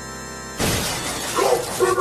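A soft, held electronic keyboard chord is cut off about half a second in by a sudden loud crash, a smashing sound effect. Busy music with pitched, bending sounds follows straight after.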